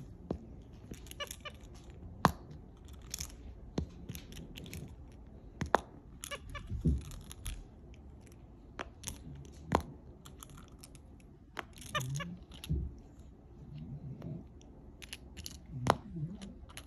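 Irregular sharp clicks and soft knocks, about a dozen scattered through, as a capuchin monkey fiddles with small plastic and silicone pop-it fidget toys and their metal keychain clips.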